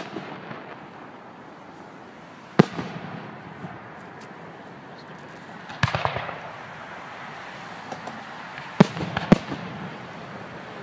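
Fireworks bursting in a display: single sharp bangs a few seconds apart, one followed by a short run of crackling about six seconds in, and two bangs close together near the end.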